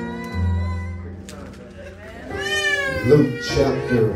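Keyboard or organ holding sustained chords. From about halfway in, a high, wavering voice rises and falls over it.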